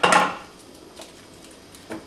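A sharp clatter of kitchen utensils right at the start, then quiet with a faint knock around a second in and a short click near the end, as a knife and cutting board are readied for slicing an onion.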